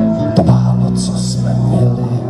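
Live folk band playing an instrumental passage: strummed acoustic guitar over held notes and a bass line, with one sharp strum or hit about half a second in.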